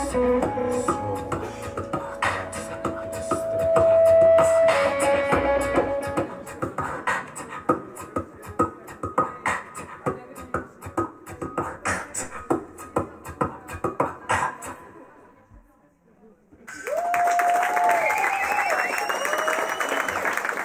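Beatboxing into a microphone with cupped hands, a held hum followed by fast clicking mouth percussion. It stops abruptly about fifteen seconds in, and after a second or so of near silence the audience breaks into cheering and applause.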